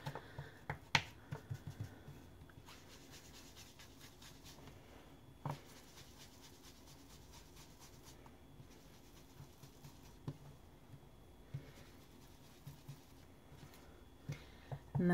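Faint dabbing and rubbing of a round foam ink-blending tool working green distress ink onto the scalloped edge of a cardstock strip, with a few sharper clicks, the loudest about a second in.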